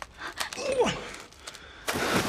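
A person's short breathy cry that falls steeply in pitch, with a few sharp clicks around it.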